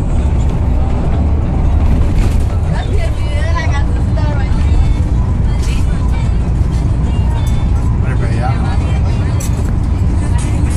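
Steady low rumble of a car driving at road speed, heard from inside the cabin: tyre, engine and wind noise. A voice and some music come through over it at moments.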